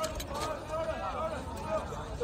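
Faint, indistinct voices talking in the background, with a low steady rumble underneath.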